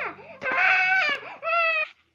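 A child screaming in a high-pitched voice: one long scream starting about half a second in, then a shorter one near the end.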